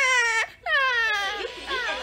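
Exaggerated, acted crying of a young child, voiced by an adult man: two loud, high wails that each fall in pitch. From about one and a half seconds, television sound with voices and music takes over.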